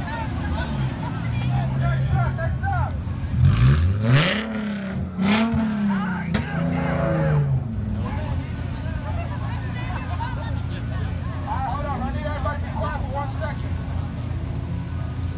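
Car engine revved hard onto a two-step launch limiter and held there for a few seconds, its pitch wavering, with four loud exhaust bangs about a second apart. The loudest bang comes early in the held rev. From about the middle on, engines settle to a steady idle under crowd chatter.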